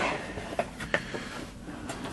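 A few faint, short clicks and taps of hands handling the model kit's cardboard box and packaging, over quiet room noise.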